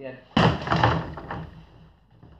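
A back-knuckle strike with a flexing wrist lands on the padded target of an AWMA Target Master striking apparatus about a third of a second in: a single thud, followed by about a second of clatter as the apparatus's arm swings and spins.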